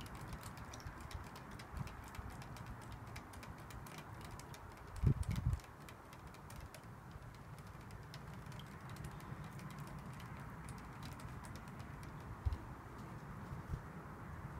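A thin wooden stick stirring buffer powder into water in a plastic cup, giving faint, quick clicks as it taps the cup wall. A low thump comes about five seconds in, over a steady low background rumble.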